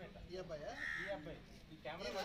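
Indistinct voices of people talking, with a single short, harsh animal call about a second in.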